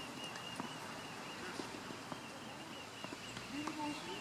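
Tennis club background: a few faint, scattered knocks of tennis balls being hit, with a brief distant voice near the end, over a steady faint high tone.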